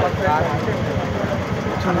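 People's voices talking over a continuous low rumble.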